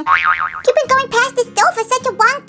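A cartoon boing sound effect, its pitch wobbling quickly up and down for about half a second at the start, followed by high-pitched voices over background music.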